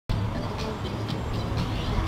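Street noise: a steady deep rumble with a few faint light clicks.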